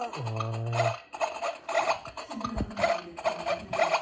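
Electronic toy kitchen playing its music, with plastic toy pieces scraping and rubbing against it.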